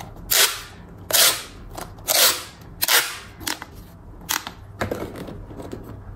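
Corrugated plastic pop-tube limbs of a toy figure being stretched, the ridges snapping open in short, sharp pops. There are four loud pops in the first three seconds, then three fainter ones.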